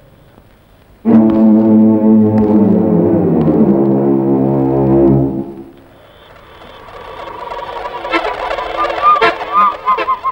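Horror film score: a sudden loud low brass chord about a second in, held for about four seconds and then fading. A quieter, wavering, eerie sound builds near the end.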